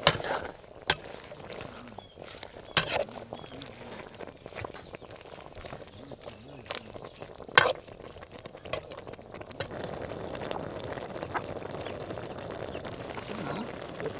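A metal ladle stirring a pot of broth and vegetables, knocking against the metal pot several times; the loudest clink comes about seven and a half seconds in. In the later part the broth simmers with a steady bubbling hiss.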